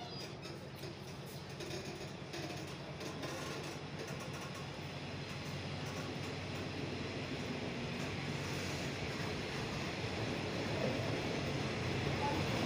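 State Railway of Thailand passenger train pulling out of the station, its carriages rolling past on the rails with a steady rumble that grows gradually louder as it gathers speed.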